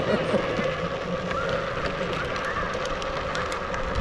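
Hard plastic wheels of a Big Wheel tricycle rolling down an asphalt path, giving a steady rumbling noise with small ticks.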